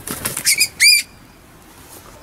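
A bird flushing: a quick clatter of wingbeats for about half a second, then one short, high, arching call about a second in, after which it goes quiet.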